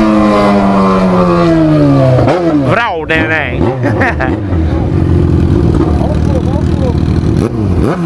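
Yamaha XJ6 inline-four motorcycle engine slowing down, its pitch falling steadily as the throttle is closed. About two seconds in come several quick rising-and-falling revs as it downshifts. From about five seconds it settles into a steady low running note as the bike comes to a stop.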